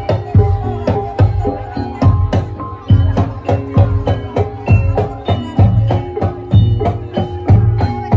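Javanese gamelan music accompanying a barongan performance: a heavy drum beat about once a second with bright metallophone notes ringing in between.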